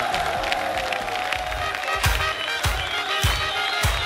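Studio audience cheering and clapping over band music. About halfway through, a steady drum beat with cymbal hits comes in.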